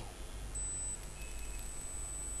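Quiet background hiss with a faint, steady high-pitched whine that starts about half a second in and holds.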